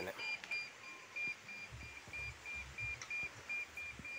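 Handheld digital satellite signal meter beeping steadily at about three short high beeps a second: its tone showing the signal is locked while the dish is aimed.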